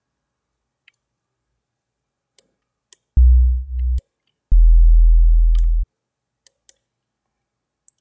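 Sine-wave sub bass from FL Studio's Sytrus synthesizer, played as two deep sustained notes, about a second and about 1.3 seconds long. Unison is on with five slightly detuned voices, so the level wavers: the first note dips in the middle and the second slowly sags.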